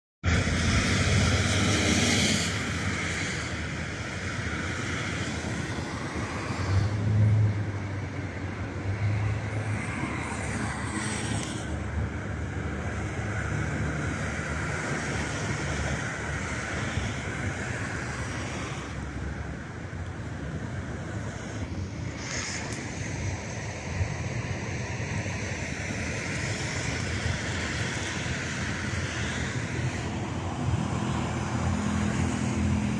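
Road traffic from cars passing on a main road: a steady hiss of tyres and engines, a little louder in the first two seconds and again about seven seconds in.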